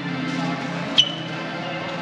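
Old barrel organ playing steady held notes, with a short, sharp high ping about a second in.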